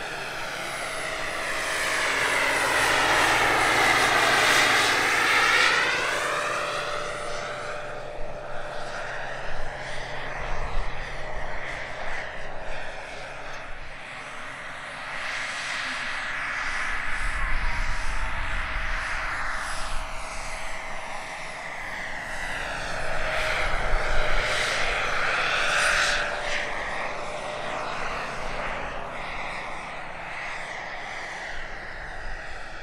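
Turbine-powered Bell 412 scale model helicopter, with a Jakadofsky Pro 5000 shaft turbine, flying: a steady turbine whine with rotor noise. It swells loudest about four seconds in and again at about 18 and 24–26 seconds, then eases off between these passes.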